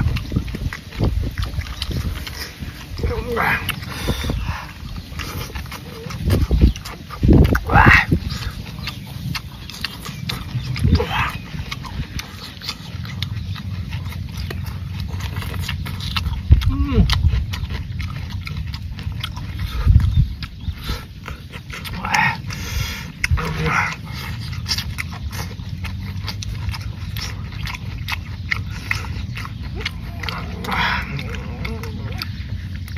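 Close chewing, slurping and lip-smacking of people eating a spicy raw shrimp salad with their fingers, with short voiced exclamations between mouthfuls.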